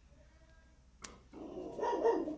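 A sharp click about a second in, followed by a dog barking briefly.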